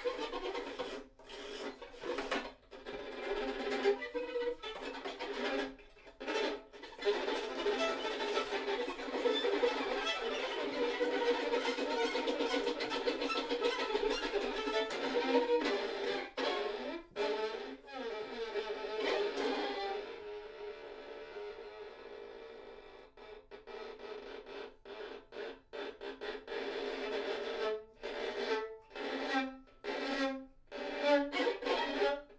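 Two violins playing a bowed duet, in phrases broken by short breaks. About two-thirds of the way through it goes softer for a few seconds, then builds again.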